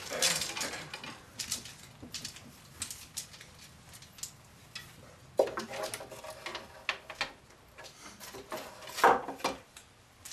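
Arrows being set into the drilled holes of a wooden arrow rack: a scattered string of light clicks and wooden knocks as the shafts touch the wood and each other.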